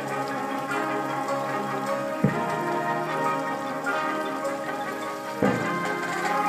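Marching band playing held chords, with a bass drum struck twice: once a little over two seconds in and again near the end.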